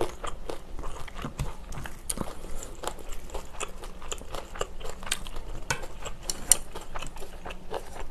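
Close-miked chewing of a mouthful of Spam kimchi stew: a steady, irregular run of wet mouth clicks and smacks, with one sharper click about six and a half seconds in.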